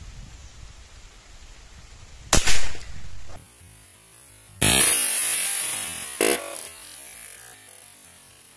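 A single sharp crack of a CBC B57 .177 PCP air rifle firing, about two and a half seconds in. About two seconds later comes a second loud, sudden sound that fades slowly, with music over it, as the picture shows the can knocked over.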